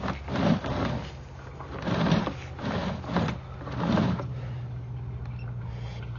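Sewer inspection camera's push cable being drawn back out of the pipe, with irregular scraping, rubbing surges about once a second over a steady low hum.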